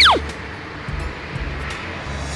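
A quick whistle-like sound effect right at the start, its pitch sliding steeply from high to low in about a fifth of a second, then a soft background music bed.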